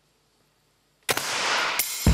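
Near silence, then about a second in a paintball marker fires: a sudden sharp shot followed by a noisy rush, with a second crack near the end.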